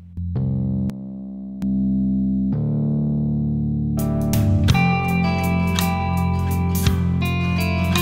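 Soloed bass guitar track playing sustained low notes, its level dropping for under a second and then jumping back up as its Z3TA+ effects chain (fast compressor and boosted low end) is toggled off and on. About four seconds in, the full mix of acoustic guitars and drums comes in.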